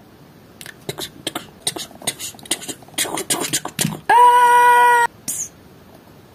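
Mouth clicks, made by a person imitating a horse's hoofbeats: a run of irregular clip-clop clicks for about three seconds. Then a held vocal note of about a second.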